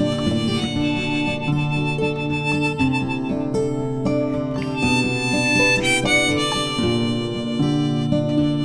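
Instrumental break in a folk song: a harmonica playing long held melody notes over acoustic guitar.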